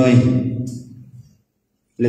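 Speech only: a man's lecturing voice trails off in the first second, followed by complete silence.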